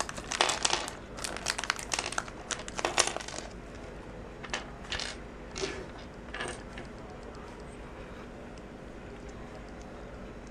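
Thin plastic bag crinkling as it is handled and small plastic building bricks are shaken out of it, for about three and a half seconds. Then a few separate light clicks of the small plastic pieces on a wooden tabletop.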